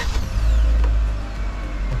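The car's 1.5-litre engine starting up: a low rumble that swells about half a second in and then eases back as it settles toward idle.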